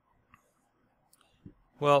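Near silence broken by a few faint, short clicks, then a man's voice starts near the end.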